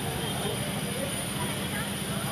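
Steady low hum of busy street ambience, with faint distant voices.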